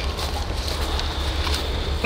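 Steady low rumble of wind on the microphone outdoors, with no distinct event.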